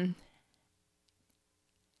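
A woman's drawn-out word trails off, then near silence broken only by a few faint clicks.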